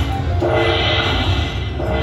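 Aristocrat Dragon Link Panda Magic slot machine playing its electronic bonus-payout tune, a chiming phrase of steady tones that starts about half a second in, as the collected coin prizes are added to the win meter.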